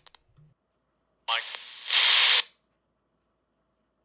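Quansheng UV-K5 handheld radio receiving air band traffic through its speaker: about a second in, a short clipped fragment of a radio voice, then a half-second burst of loud static that cuts off suddenly.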